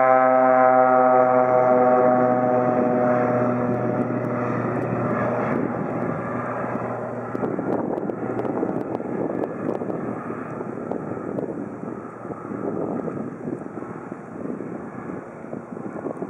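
Cessna Skywagon's six-cylinder piston engine and propeller at climb power: a strong pitched drone whose tones slide slightly lower over the first few seconds as the plane flies away, then thinning into a rougher, fainter rumble that fades steadily toward the end.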